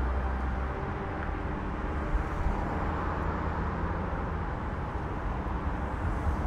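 A car driving along a road: a steady low rumble of engine and tyre noise on asphalt.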